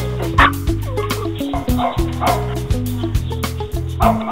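A puppy barking several times in short bursts over background music.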